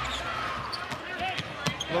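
Basketball being dribbled on a hardwood court: a run of short, sharp bounces in the second half, over crowd murmur.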